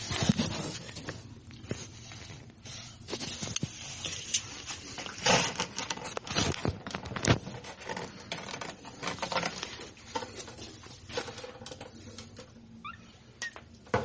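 Young kittens' paws and claws pattering and scratching on cardboard and wood, with irregular scrapes and knocks from close handling.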